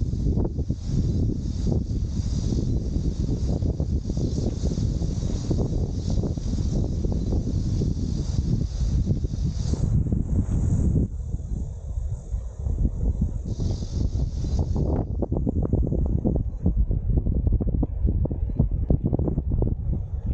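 Wind buffeting the microphone: a low rumble that rises and falls in gusts and eases briefly about halfway through.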